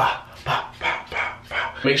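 Cologne atomizer spraying in about five quick bursts of hiss.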